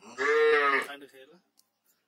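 A farm animal calling: one loud, sustained call of just under a second that fades out about a second in.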